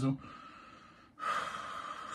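A man's breath between sentences: a faint exhale, then about a second in, a sharp audible inhale through the mouth that lasts about a second.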